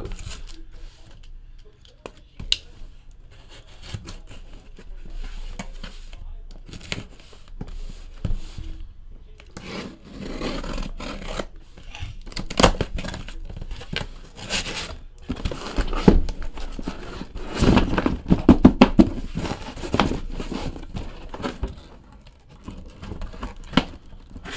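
A cardboard case sealed with packing tape being handled and torn open: scraping, crinkling and ripping of tape and cardboard, busiest in a quick run of rips past the middle.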